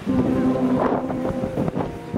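Live ensemble music with held, sustained notes, partly covered by wind buffeting the microphone, with a cluster of sharp knocks about a second in.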